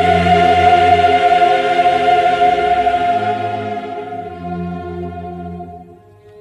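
Choir and orchestra holding one long sustained chord in a Baroque oratorio, entering strongly and slowly fading; the bass moves to a new note about halfway through.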